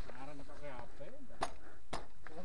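Faint voices of people talking in the background, with two sharp metallic clicks about half a second apart near the end.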